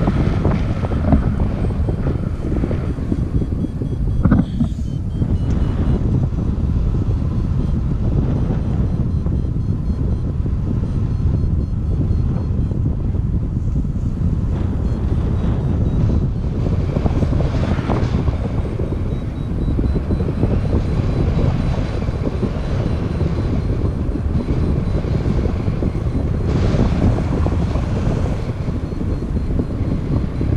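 Wind buffeting an action camera's microphone in paraglider flight: a loud, steady low rumble that swells in gusts.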